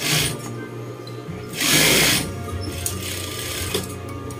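Juki industrial sewing machine running in a short burst as it stitches a pin tuck in white uniform fabric, loudest for about half a second near the middle, over a steady low motor hum. Background music plays underneath.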